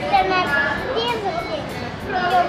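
A young boy talking, in a high child's voice.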